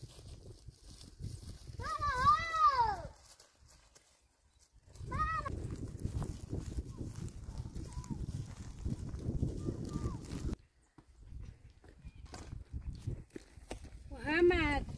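A person calling out loudly in long, drawn-out cries with a rising-then-falling pitch, twice: a longer call about two seconds in and a short one about five seconds in. Between and after the calls there is a rough rustling, which stops suddenly about ten seconds in.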